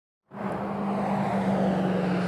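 A moment of silence, then a steady machine hum: a constant low tone over an even rushing noise, with no change in pitch or level.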